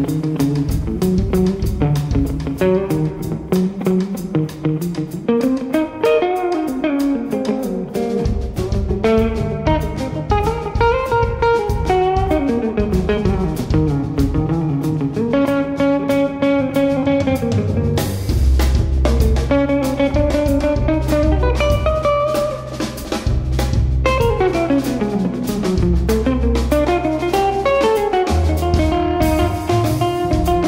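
Live jazz band: an electric guitar takes a solo of fast melodic runs over drums and bass. The bass and drums fill in more heavily about halfway through.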